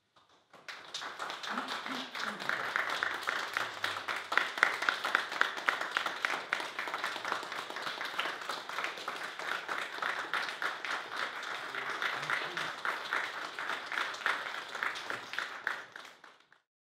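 A small audience applauding: a steady patter of clapping hands that starts about half a second in and keeps up evenly throughout.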